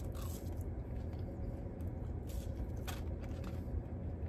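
A person chewing a mouthful of french fries, with a few faint soft clicks of chewing, over a steady low background hum.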